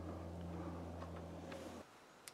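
Faint, steady low hum that cuts off near the end.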